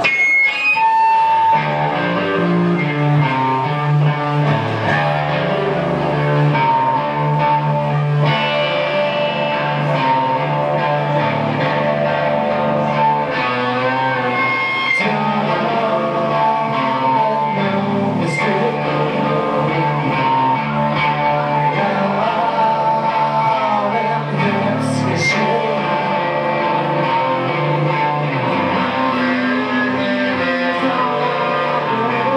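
Live rock band playing electric guitar, bass and drums, the song kicking in about a second in and running at a steady, full level.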